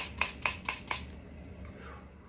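Beaded bracelets clacking together as the wrist moves: a quick, even run of sharp, ringing clicks, about four or five a second, that stops about a second in.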